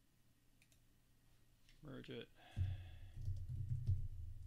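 Typing on a computer keyboard: a quick run of keystrokes that starts about two and a half seconds in, after a single spoken word.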